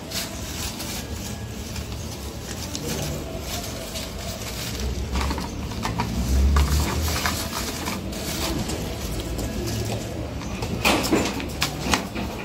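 Rustling and light knocking as artificial flowers and decor items are handled on shelves, over a steady low background rumble.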